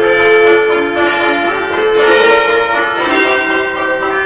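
A mechanical musical instrument playing a tune: long held notes with a bright, bell-like strike about once a second.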